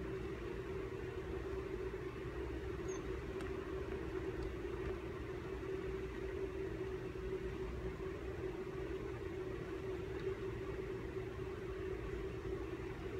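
Steady low hum of room tone in a large hall, unchanging throughout, with a few faint ticks a few seconds in.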